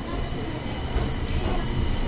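Running noise inside a Kita-Osaka Kyuko 9000 series electric train car: a steady low rumble from wheels and track, with a faint steady high tone over it. It grows a little louder about a second in.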